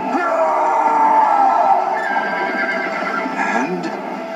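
A cartoon horse's long whinny, falling slightly, over music from an animated film's soundtrack, played through a TV's speaker.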